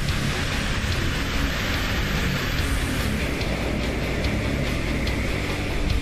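Steady rushing hiss of water spray from firefighting hose streams and a fire truck's water cannon, with rock music playing underneath.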